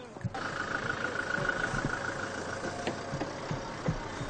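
A vehicle engine idling under a steady hiss, with a thin steady whine and scattered low thumps; the sound comes in abruptly just after the start.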